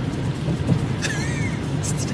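Steady low rumble of a car's engine and road noise heard from inside the cabin while driving, with a short gliding tone rising and falling about a second in.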